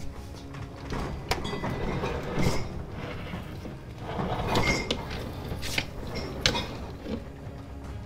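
A refrigerator being dragged across a stone-tiled floor in several pulls, scraping and clattering, over background music.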